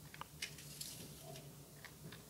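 Faint, scattered light clicks and taps of fingers handling a white molded packaging insert tray.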